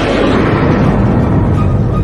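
A deep, rumbling boom sound effect that swells in and rolls on loudly through the intro.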